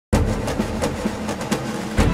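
Opening sound bed of a promotional ad: a dense rumbling soundtrack with a low hum that starts suddenly just after a silent cut and stays at a steady level.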